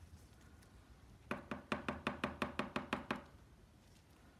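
A quick, even run of about a dozen light taps, about six a second, lasting about two seconds.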